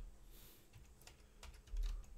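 Quiet typing on a computer keyboard: a few scattered keystrokes, with a louder one near the end.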